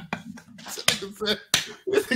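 Several sharp clicks in quick succession, the loudest about a second in and another near the end, over a low voice.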